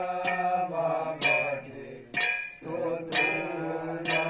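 Kumaoni jagar chanting: male voices sing a slow devotional melody in long held notes, with a struck percussion beat about once a second that rings briefly after each stroke. The singing breaks off briefly about two seconds in.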